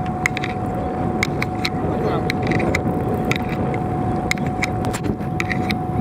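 Fishing boat's engine running steadily under a constant high whine, with a steady rushing noise and irregular sharp clicks.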